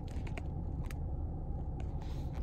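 Steady low hum of a car cabin, with the engine or air-conditioning running, and a few faint clicks of a phone being handled.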